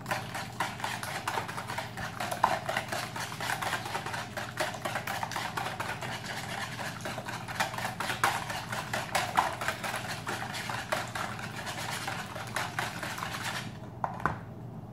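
Wire whisk beating eggs in a plastic bowl: a fast, steady clatter of the wires against the bowl, which stops just before the end.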